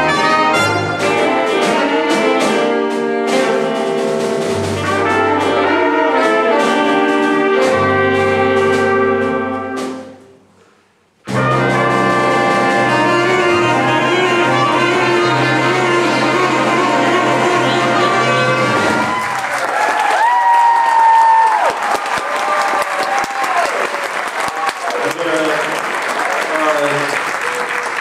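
Student jazz big band with trumpets, trombones, saxophones, piano, bass and drums playing loudly. The whole band stops dead for about a second near the middle, comes back in, and ends the tune about two-thirds of the way through, followed by audience applause.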